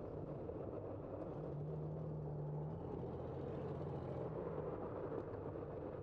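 Street traffic heard from a moving bicycle: steady road noise, with a low engine hum from a nearby car that comes in for a few seconds in the middle.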